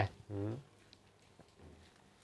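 A man's short murmured 'ừ' about half a second in, then quiet room tone.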